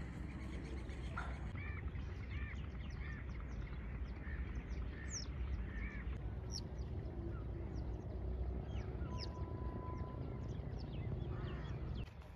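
Several birds calling: a run of repeated arched calls in the first half, and many short, high chirps throughout, over a steady low rumble.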